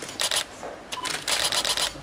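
Rapid clicking of camera shutters: a short burst near the start and a longer run of quick clicks in the second half, with a brief beep just before it.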